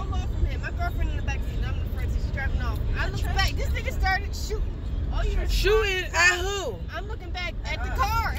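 Steady low road rumble of a moving car heard from inside the cabin, with an indistinct voice over it that is loudest about six seconds in.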